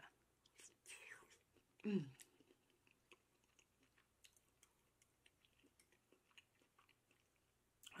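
Close-miked mouth chewing a soft mouthful of shrimp and grits: faint, scattered small wet clicks and smacks, with a brief "mm" about two seconds in.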